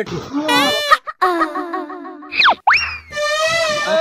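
Cartoon-style comic sound effects: several wobbling pitched tones and a quick sliding 'boing' glide that rises and falls steeply about two and a half seconds in, with a sharp click about a second in.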